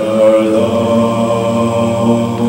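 Co-ed a cappella group singing a sustained chord in several voices, which comes in at full strength at the start and is held steady.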